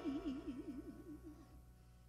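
A woman singing, holding the end of a long note with a wide vibrato that fades away about a second and a half in.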